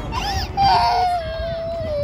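A toddler crying: a short sob, then from about half a second in one long, loud wail that sinks slowly in pitch.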